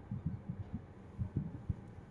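Low, irregular thumps and rumble heard from inside a slowly moving car's cabin, several soft knocks a second with little above the deep range.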